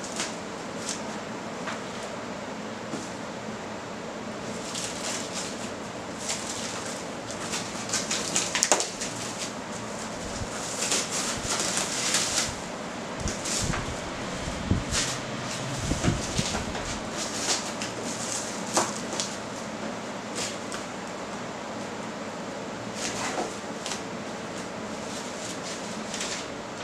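Clear plastic wrapping being pulled and peeled off a cardboard parcel, crinkling and rustling in irregular bursts that are busiest in the middle, with a few low handling bumps of the box. A steady hum runs underneath.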